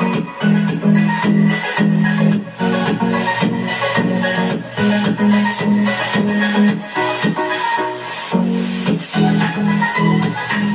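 Upbeat background music with a steady beat, percussion and a repeating bass line.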